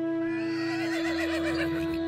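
A recorded horse whinny, triggered from the Soundbeam, wavering up and down in pitch for over a second over a sustained chord of held synthesised notes.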